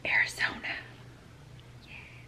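A short whisper in the first second, breathy and without voice, then a faint steady low hum.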